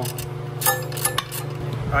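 Several sharp metallic clinks of tools or hardware on metal, some in quick pairs, over a steady low hum.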